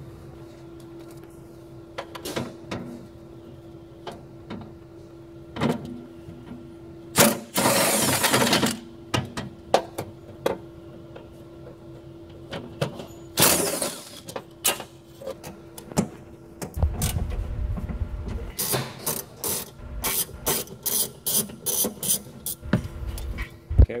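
Socket tools working 10 mm fender bolts loose inside a car's front wheel well. Two harsh noisy bursts of about a second and a half come near a third and a half of the way through. A rapid run of clicks and knocks follows near the end, over a steady hum.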